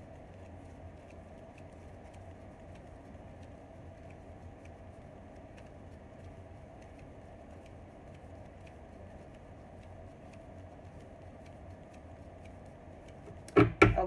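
Steady low room hum with faint scattered clicks, then a few sharp knocks near the end as tarot cards are handled on a hard stone tabletop.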